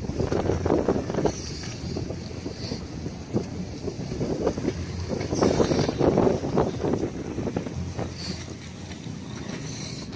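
Wind buffeting the microphone in gusts, a rumbling rush that swells strongest in the first second or so and again around five to seven seconds in.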